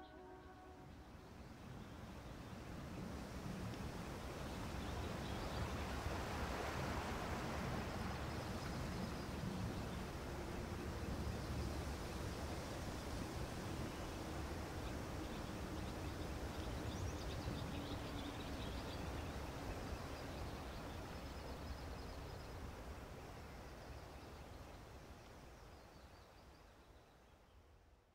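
Outdoor ambience: a steady, faint wash of noise with a low rumble. It swells up over the first few seconds and fades out near the end.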